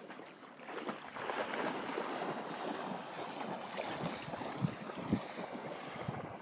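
Shallow bay water sloshing and splashing, with wind on the microphone. There are two soft, low thumps about four and a half and five seconds in.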